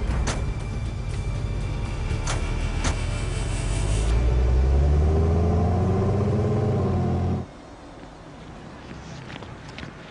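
Chevrolet SUV engines running as the vehicles pull away, with the engine note rising and falling a few seconds in, under background music. A few sharp clicks come in the first three seconds, and the sound cuts off suddenly about seven seconds in, leaving a quieter background.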